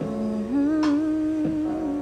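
A woman humming a long held note with closed lips. The note steps up in pitch about half a second in, over a steady instrumental backing.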